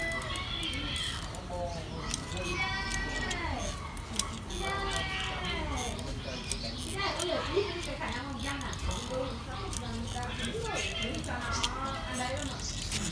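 Children's voices chattering in the background, with several short, sharp snips of pruning shears cutting bonsai fig twigs, the clearest about four seconds in.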